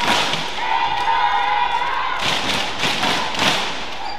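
Badminton rally: the shuttlecock is struck by rackets several times, with sharp hits near the start, a little after two seconds and near the end. A drawn-out high squeal, typical of a court shoe sliding on the sports floor, starts about half a second in and holds for over a second.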